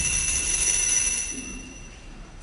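An altar bell rung at the elevation during the consecration: high, clear ringing tones that fade away over about two seconds.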